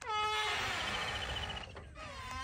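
A long creaking squeal from the backhoe loader's cab door hinges as the door swings. It slides down in pitch at first, then holds one steady pitch for over a second and a half before stopping.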